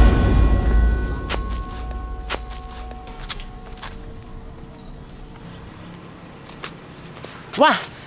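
The deep rumble of an edited boom sound effect dies away over the first three or four seconds. It is the sound of the super-powered kick that sends the ball out of sight, and a few faint clicks and thin tones linger after it. A short voice cry comes near the end.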